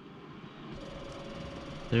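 The compressor of a SetPower RV45S 12-volt portable fridge-freezer kicking on under a second in and running with a steady hum and hiss, set to maximum compressor speed. It starts because the set temperature has just been dropped far below the inside temperature.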